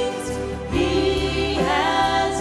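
Small youth vocal ensemble singing a gospel song together into microphones. One phrase tails off about half a second in, and the next comes in just under a second in.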